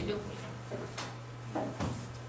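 Classroom room sound: faint background talk over a steady low hum, with a few short knocks and clicks from things handled on a desk, near the start, about a second in and near the end.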